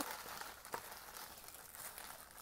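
Faint rustling of a plastic mailer bag and small plastic bags as a hand reaches in to take out the parts, with a light tick about a third of the way in.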